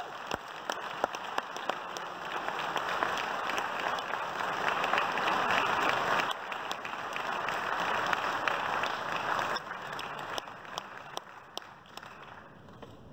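Audience applauding: dense clapping that builds through the middle and thins out over the last couple of seconds.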